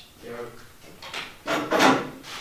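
A teenager drinking a thick, creamy liquid from a funnel in his mouth: a short muffled vocal sound, then a loud, harsh, breathy splutter about one and a half seconds in as he comes up from it.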